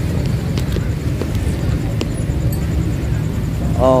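Street noise of a busy market with motorbike traffic: a steady low rumble with a few faint clicks.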